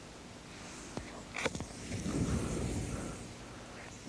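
A few sharp strikes, then propellant powder from a cut-open cartridge flaring up with a quick whoosh that swells and dies away over about a second and a half.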